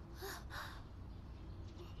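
Two quick breathy gasps from a person, close together, near the start.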